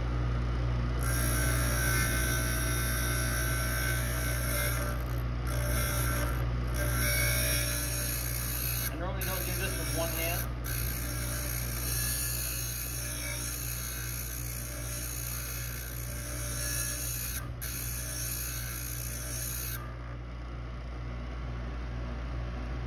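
Electric piston-ring gap grinder running, its abrasive wheel grinding the end of a 3800 V6 top compression ring: a high steady hiss over the motor's hum. The hiss breaks off briefly a few times and stops about two seconds before the end. About four thousandths is being taken off to open the gap to around 25–26 thousandths for boost.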